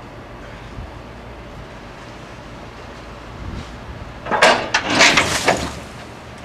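Forklift-mounted steel dump hopper tipping its load into a steel dumpster: about four seconds in, a loud burst of clanks and the rush of the loose load sliding out, lasting about a second and a half, over the steady low running of the forklift.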